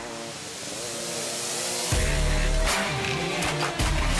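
Background music: a rising swell that gives way to a heavy bass beat about two seconds in.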